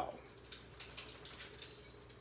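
Faint, irregular rustling and scuffing of a handheld phone being moved and clothing shifting as the person holding it changes position.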